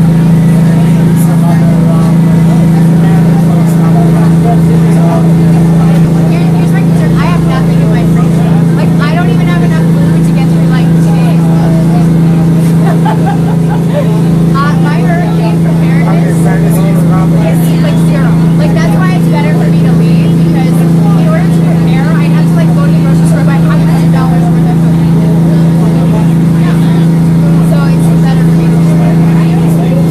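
A dive boat's engine running with a loud, steady low drone that does not change, heard from inside the boat's cabin. People talk over it.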